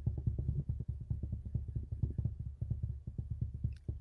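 Ticking of a spinning on-screen name-picker wheel: a fast, even train of clicks, about ten a second.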